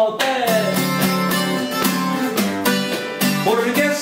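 Opening of a norteño song: strummed acoustic guitar with a button accordion holding steady chords underneath.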